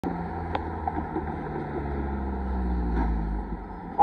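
Road traffic: cars and pickup trucks driving along the street past the railroad crossing, a low rumble that builds and then drops away about three and a half seconds in.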